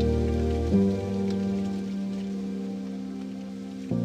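Lofi hip hop instrumental: sustained, slowly fading chords, with a new chord coming in about a second in and another near the end, over a soft crackling, rain-like hiss and no drum beat.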